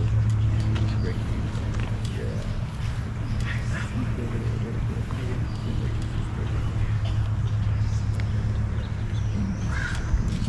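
Outdoor crowd ambience: indistinct distant talking over a steady low hum, with a crow cawing.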